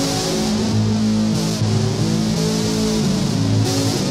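Les Paul-style electric guitar through a Behringer UM300 distortion pedal, playing heavily distorted sustained notes that change pitch every half second to a second.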